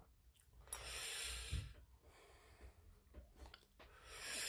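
A faint breath, one long exhale lasting about a second, starting just under a second in. A few soft clicks follow near the end.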